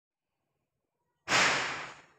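Dead silence, then a little over a second in, a sudden burst of hiss-like noise that fades away over under a second.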